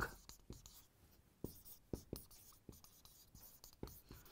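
Marker pen writing on a whiteboard: faint, short strokes and taps of the tip, irregularly spaced.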